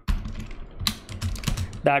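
Typing on a computer keyboard: a keystroke at the start, then a quick run of keystrokes about a second in.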